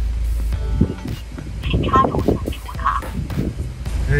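Background music and brief voice-like sounds over a steady low hum.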